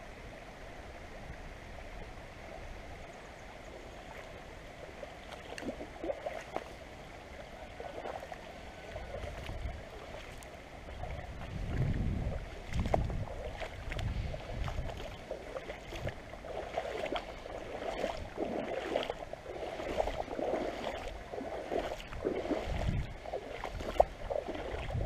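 Shallow river water running and rippling close to the microphone, with irregular splashing and sloshing from movement through the water that grows louder about halfway through.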